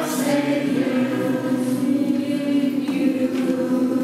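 A small group of mixed voices singing a hymn together from songbooks, holding long sustained notes.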